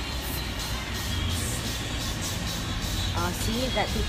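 Steady low rumble of a vehicle driving, engine and road noise heard from inside the cabin. A voice comes in near the end.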